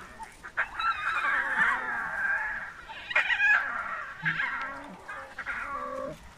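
Tiny lion cubs calling with high, wavering mews: a long run of calls in the first half, then a few shorter ones.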